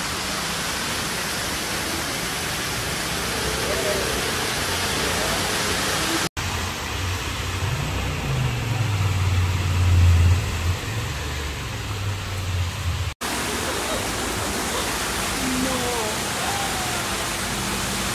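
Floodwater rushing steadily down the stairs into a metro station. After a cut, a low engine hum from a scooter riding through a flooded street swells and fades. A second cut leads to a steady rushing of water.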